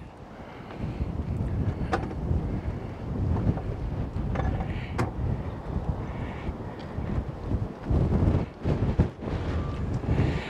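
Wind buffeting the microphone: a gusty low rumble that swells and fades, with a few sharp clicks, at about two, five and nine seconds in.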